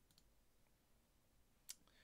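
Near silence with room tone, broken by one short, sharp click near the end.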